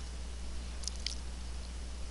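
Steady low hum with a faint background hiss, broken by a couple of faint short ticks about a second in.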